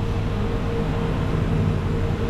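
Steady low machine hum and rushing noise, with a faint steady whine running through it.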